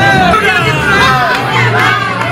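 A crowd of many voices shouting and cheering together, loud and continuous, over a steady low drone.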